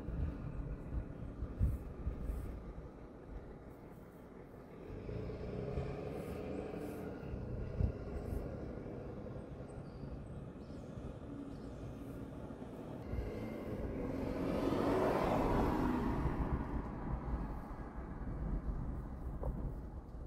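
Street traffic passing, heard from inside a parked car: a continuous low rumble with vehicles swelling past, the loudest one building and fading about three-quarters of the way through.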